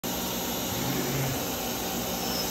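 Steady rushing noise of shop machinery running, with a faint low hum about halfway through.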